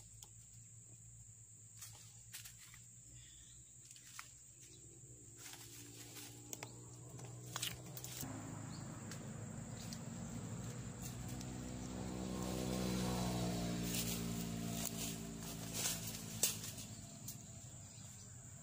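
A motor vehicle's engine passing by: it swells from about six seconds in, is loudest around thirteen seconds with its pitch falling as it goes past, then fades away. Scattered light clicks and rustles sound throughout.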